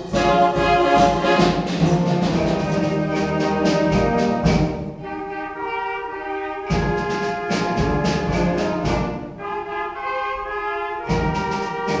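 Youth wind band playing live: trumpets, tuba, saxophones and clarinets over a steady drum beat. Twice the full band drops away, about five seconds in and again after nine seconds, leaving a few held wind notes, before the whole band comes back in.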